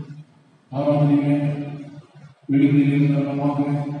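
A man's voice through a microphone, in two long phrases held on a nearly level pitch with a short pause between them, like a chanted recitation.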